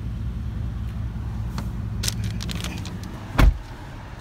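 A steady low rumble with a few light clicks, then one short, loud thump about three and a half seconds in, at a car's open driver's door.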